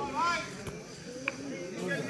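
Voices of players and spectators calling out at an outdoor cricket ground, one voice rising and falling near the start, with a single sharp knock about a third of the way in and a short high chirp soon after.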